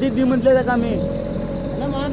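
Men shouting urgently on a small boat over the steady low running of the boat's motor.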